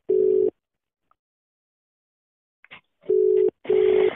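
Telephone ringback tone heard over the call: a steady low tone in double pulses, one pulse ending about half a second in and then a two-pulse ring near the end, while the called phone rings unanswered.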